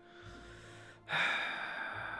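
A man breathing in, then a loud heavy sigh starting about a second in and slowly fading out, a sigh of pain from his aching leg.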